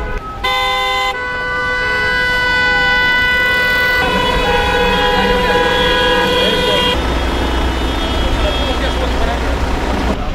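Several car horns held down together, a chorus of long steady tones at different pitches, with one tone wavering slowly up and down. The mix of horns changes abruptly a few times: taxis honking in protest.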